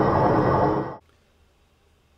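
Battery-electric lawn tractor, converted to Ryobi 40V brushless motors, running across the lawn: a steady, noisy whir with a thin high whine over it. The sound cuts off suddenly about a second in and is followed by near silence.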